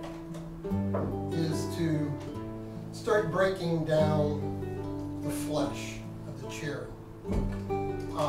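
Acoustic guitar music, with held notes changing every couple of seconds.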